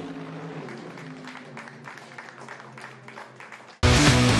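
Scattered hand-clapping from a small group, with faint music underneath. Loud rock music with electric guitar cuts in suddenly near the end.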